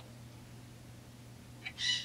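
A brief high-pitched squeak near the end as a degree wheel on a chainsaw crankshaft is turned by a gloved hand, over a faint steady low hum.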